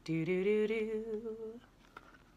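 A woman's voice singing one wordless held note of a storytime melody, stepping up slightly at the start and fading out after about a second and a half.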